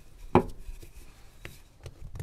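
A sharp knock of a wooden rolling pin against a countertop about a third of a second in, then a fainter tap about a second later, with soft handling noise of dough being pressed by hand.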